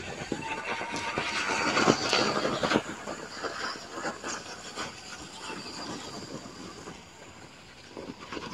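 Electric bicycle riding over snow: a crackling, hissing crunch of tyres on snow, loudest in the first three seconds as it passes close, then fading as it rides away.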